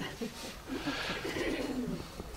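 Quiet laughter that swells about two-thirds of a second in and dies away near the end.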